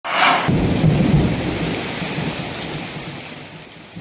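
A thunderclap: a sharp crack, then a low rumble that slowly fades out over about three seconds.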